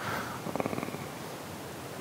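Quiet studio room tone, with a brief low creak made of fast, even pulses about half a second in, lasting under a second.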